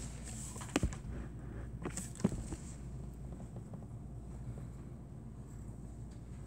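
Pen writing on paper: soft scratching strokes, with a couple of sharper taps about one and two seconds in, over a steady low hum.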